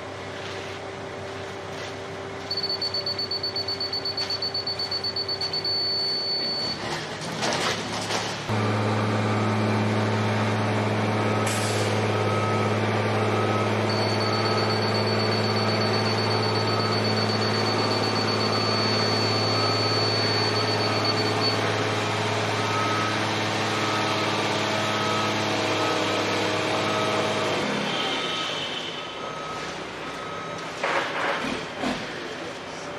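A heavy vehicle's engine running steadily, loud from about a third of the way in until near the end, with a reversing alarm beeping about once a second over it. Before the engine comes in, the sound is quieter with a high, thin beeping tone.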